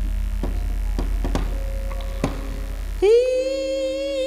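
Strong steady electrical mains hum through the live sound system, with a few scattered light knocks and faint fading notes. About three seconds in, a loud voice comes in on one long note that rises, holds and wavers near the end.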